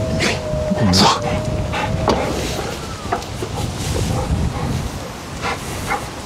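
Ora Funky Cat's power tailgate closing: its motor gives a steady whine that stops about two seconds in.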